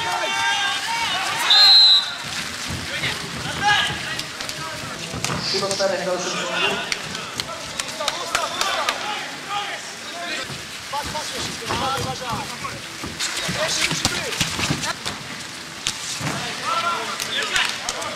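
Scattered voices of spectators and players shouting and calling at an outdoor football match, over a steady hiss of falling rain. A brief shrill high note stands out about two seconds in.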